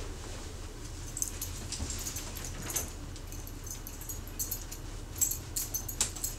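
Dog's collar tags jingling in short, scattered bursts as the dog moves about, the busiest jingling near the end.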